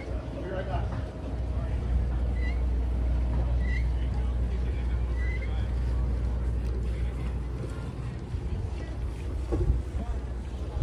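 Low, steady rumble of wind buffeting the microphone outdoors, with a few short faint high chirps in the middle and a bump near the end.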